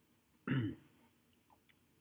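A man clearing his throat once, briefly, about half a second in.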